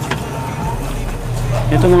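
Steady road traffic noise from a busy street, with a man's voice speaking briefly near the end.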